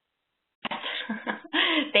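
A person laughing briefly, starting about half a second in, heard over a narrow-band phone line.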